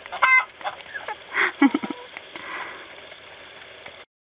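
Chickens clucking and calling while they feed on lettuce. There is a short high call about a quarter second in and a louder call about a second and a half in, with softer clucks after.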